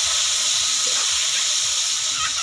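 Diced potatoes sizzling in hot oil in a kadai as they are stirred with a spatula: a steady high hiss.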